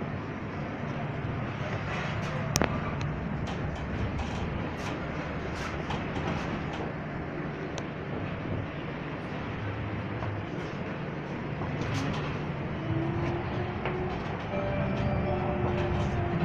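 Stadler low-floor tram heard from inside the passenger compartment while running: a steady rolling rumble with rattles and one sharp click about two and a half seconds in. Near the end a faint whine from the electric drive sets in.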